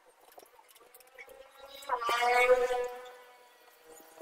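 A flying insect buzzing past close to the microphone: a steady high-pitched hum that swells about two seconds in and fades away over about a second.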